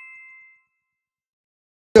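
A bright, descending two-note chime sound effect, a high ding then a slightly lower one, rings and fades away within about half a second, followed by dead silence.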